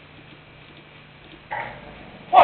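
Steady low electrical hum and hiss, as from an electric guitar amplifier switched on with the strings at rest. About one and a half seconds in, a sudden louder sound starts and then fades.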